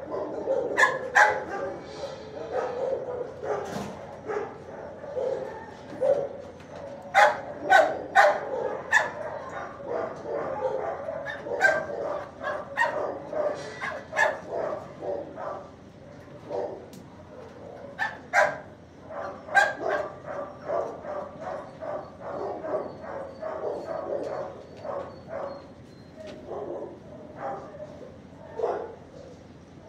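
Dogs barking across a shelter kennel block: repeated sharp barks, coming in clusters that are loudest about seven to nine seconds in and again around eighteen to twenty seconds in, over a constant din of more distant barking.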